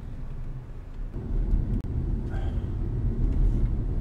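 Car driving, heard from inside the cabin: a steady low rumble of engine and road noise that grows a little louder about a second in.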